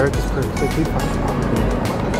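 Background music with voices talking over it.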